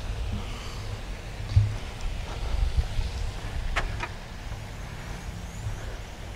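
Low rumble of the camera being carried, with a thump about one and a half seconds in and two sharp clicks close together near four seconds in, as the Ferrari F430's rear engine lid is unlatched and raised.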